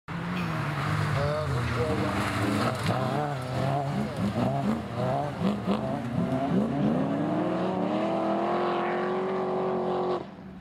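Autograss race car engines revving hard on a dirt track, climbing and dropping in pitch through gear changes. Near the end one engine holds a long, steadily rising note.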